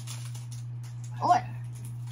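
A steady low hum, with a child's brief spoken "Or" about a second in.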